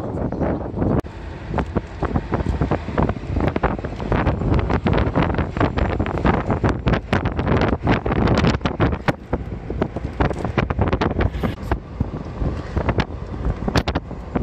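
Wind buffeting the microphone in irregular gusts over the low rumble of a car driving along a road.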